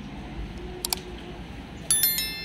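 Subscribe-button overlay sound effects: a sharp mouse-click double click about a second in, then another click near the end that sets off a bright, ringing bell-notification chime.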